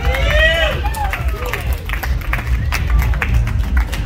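Live keyboard music with a deep, pulsing bass, with a crowd talking over it. A voice slides up and down in pitch in the first second.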